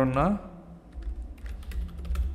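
Typing on a computer keyboard: a run of irregular key clicks starting about half a second in.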